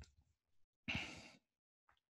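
One short sigh, a breath let out about a second in, with near silence around it.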